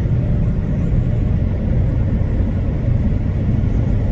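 Steady low rumble of a truck cab at highway speed: engine drone and tyre and road noise heard from inside the cab.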